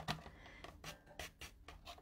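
Sliding-blade paper trimmer being drawn along its rail, cutting through cardstock: a run of faint, irregular scratchy ticks.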